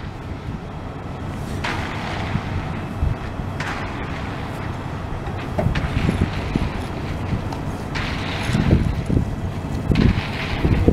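Wind buffeting the microphone outdoors: a steady low rumble, with louder gusts of hiss about two seconds in, again near four seconds, and at about eight seconds.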